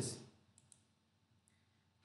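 Near silence, with a few faint small clicks in the first half, just after a spoken phrase trails off.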